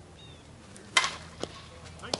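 Slowpitch softball bat striking a pitched ball: one sharp, loud crack about a second in, followed by a lighter knock about half a second later.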